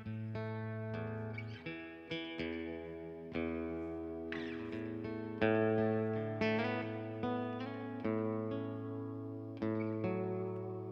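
Acoustic guitar played live, chords strummed about once a second and left to ring between strokes, with no singing.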